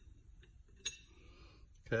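Two light metallic clicks of a box-end wrench being fitted onto the crankshaft pulley bolt of a diesel truck engine, ready to turn the engine over by hand; a man says "okay" at the end.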